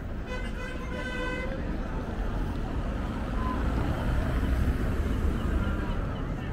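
A vehicle horn sounds once for just over a second, one steady tone, over the low rumble of city street traffic, which grows a little louder in the second half.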